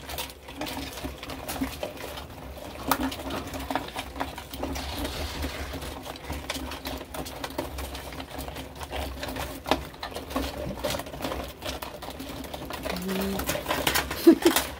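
Live Dungeness crabs crawling over one another in a plastic tub, a dense, irregular run of small clicks and scrapes as their shells and legs knock together.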